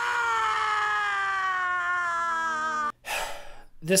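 A woman's long, anguished scream from a TV drama clip: one held cry, slowly falling in pitch, that cuts off abruptly about three seconds in. A short rush of breathy noise follows.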